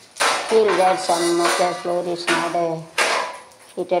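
Metal cookware and utensils clattering and scraping, with sharp strokes about a quarter second in, a little after two seconds and at three seconds, heard over a voice.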